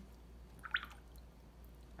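A single brief watery plink a little under a second in, from a paintbrush dipped into a jar of rinse water, over faint room tone.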